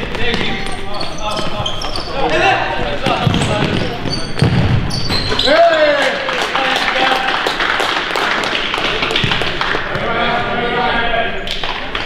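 Indoor futsal game echoing in a sports hall: players and spectators shouting, with ball kicks, thuds and shoe squeaks on the court floor. A dense stretch of shouting and cheering starts about halfway through as a goal goes in.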